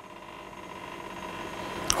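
Faint, steady background hum with a few held tones, slowly growing louder, and a short click just before the end.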